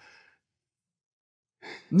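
A man's breathing between words: a faint breathy exhale trailing off at the start, then near silence, and a short intake of breath just before he speaks again.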